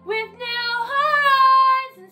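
A woman singing solo: she swoops up into a note, rises again about halfway and holds it, then breaks off just before the end, over a faint backing track.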